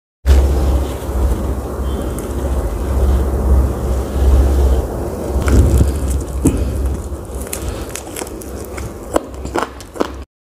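Close-miked eating: a steady low rumble and handling noise on the lapel microphone, then from about halfway in, sharp clicks and crackles of chewing and handling crisp fried chicken and pakora.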